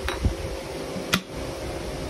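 Metal vise base being set down onto a metal fixture plate over dowel pins: a soft knock, then one sharp metallic click about a second in, over a steady low hum.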